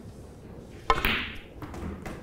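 A snooker shot: one sharp click about a second in, as the cue tip strikes the cue ball, with fainter ball clicks after it.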